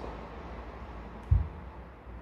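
Quiet room noise with a single short, dull low thump about two-thirds of the way in, from a small cosmetic jar being handled on the desk.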